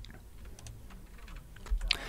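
Faint, irregular clicking of computer keys.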